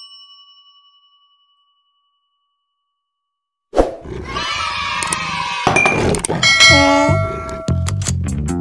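A single bell-like ding rings out and fades over a few seconds, followed by a short silence. About four seconds in, a busy run of edited-in subscribe-button animation sound effects starts: chimes, held tones and gliding tones.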